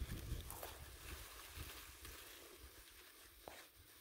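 Dry leaves rustling and crackling faintly as a nine-banded armadillo roots through the leaf litter, with a couple of sharper crackles and a low rumble at the start.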